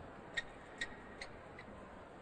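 Four light, sharp ticks about 0.4 s apart, each fainter than the one before, over faint background hum.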